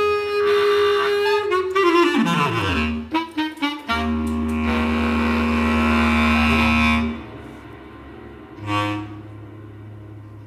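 Solo bass clarinet in a contemporary piece. A held high note slides down in pitch; then comes a low, rough held sound with breath noise over it. That sound cuts off about seven seconds in, followed by quieter playing with one brief swell near the end.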